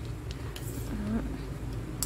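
The steel blade of a 3 m tape measure being pulled out of its case by hand, with faint sliding and a few light clicks, over a low steady hum.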